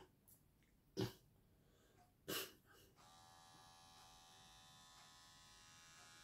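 A wrist blood pressure monitor's small air pump starting about three seconds in and running with a faint steady whine as it inflates the cuff. Two brief soft sounds come before it.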